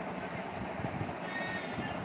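A brief high-pitched animal call, a thin squeak-like tone, about one and a half seconds in, over a steady background hum.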